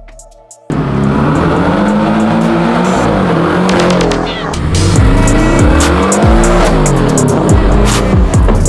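Porsche 718 Boxster's 2.0-litre turbocharged flat-four engine revving hard as the car pulls away, starting suddenly about a second in. Its pitch climbs and drops several times.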